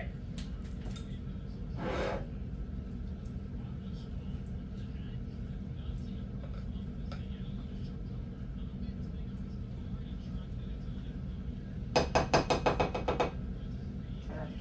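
A spatula knocking rapidly against a bowl as food is worked out of it: a quick run of about a dozen sharp clicks lasting just over a second near the end, over a steady low hum.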